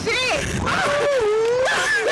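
Women riders wailing, one long drawn-out cry sliding down in pitch and then slowly rising, as they are flung about on a Slingshot reverse-bungee ride.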